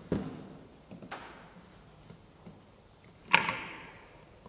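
Adjustable wrenches clinking on a bolt and nut in the metal lid of a paint pressure pot as the nut is tightened: a few light knocks, then one loud ringing clank near the end.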